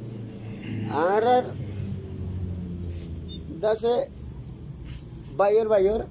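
Crickets chirping at night: a steady, high-pitched trill pulsing about seven times a second. A man's voice comes through it in short phrases.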